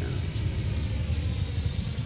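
Parrot AR.Drone quadcopter's rotors running steadily as it climbs, a faint high whine over a low rumble.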